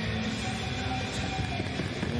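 Ice-level sound of a hockey game in play: a steady arena hum with skates and sticks on the ice, and faint held notes of music from the arena's sound system.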